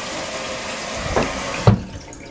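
Kitchen sink faucet running steadily, then turned off about 1.7 seconds in with a short clunk, the water cutting off suddenly.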